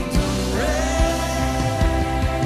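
Live worship band playing with guitar and drums, and a voice that glides up to a held note about half a second in.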